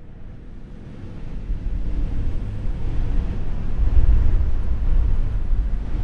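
A low, noisy rumble with no clear tones that swells steadily louder.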